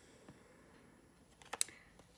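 Tarot cards being handled, making a quick cluster of sharp clicks about one and a half seconds in, over quiet room tone.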